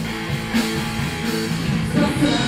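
Rock band playing an instrumental passage: sustained guitar chords over bass guitar, with a few drum hits.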